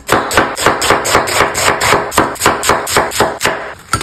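A chef's knife chops crispy cooked bacon on an end-grain wooden cutting board, about five quick crunchy chops a second. The chopping stops shortly before the end.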